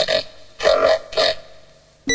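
Radio show jingle: three short bursts of an electronically treated voice over a steady tone that fades away in the second half.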